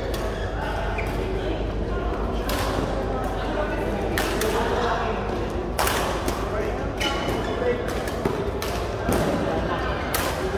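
Badminton rackets hitting a shuttlecock during a doubles rally: a series of sharp hits a second or two apart, mixed with players' footwork on the court floor, echoing in a large hall.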